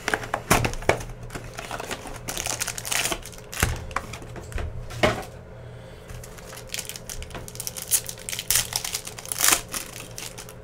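Hands handling a cardboard card hobby box and its foil-wrapped packs: irregular clicks, scrapes and rustles, with crinkling foil as a pack is torn open near the end.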